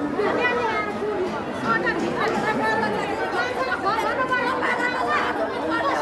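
A crowd of many people talking over one another in a steady, continuous chatter of overlapping voices.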